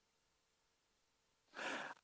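Near silence, then about one and a half seconds in a man's short in-breath before he speaks.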